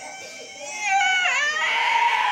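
A young boy's high-pitched, drawn-out wail, a playful cry-like yell that gets much louder about a second in, dips in pitch, then holds.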